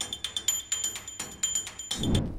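Short music cue of fast, even ticking, about eight clicks a second, under a high, thin tone that pulses on and off like an alarm or bell. It cuts off at the end.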